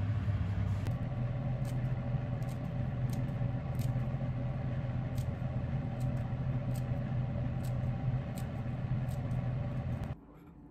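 Kitchen scissors snipping shiso leaves in a series of light, fairly regular snips about every two-thirds of a second, over a steady low hum.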